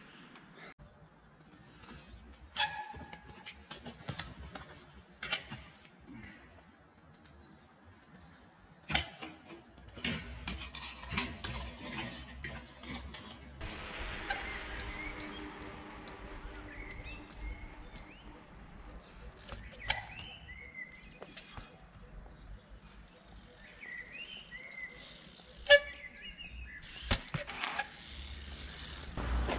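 A 20-inch trials bike hopping on pavement: a series of sharp, separate knocks of tyre and frame landing, the loudest a couple of seconds before the end. A steady hum runs for a few seconds in the middle.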